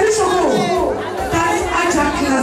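Several women chattering at once in a crowded room, overlapping voices.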